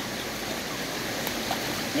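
Flowing river water rushing, a steady, even wash of noise.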